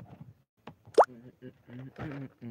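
A man's voice talking in short phrases, with one short, loud pop that slides quickly upward in pitch about a second in.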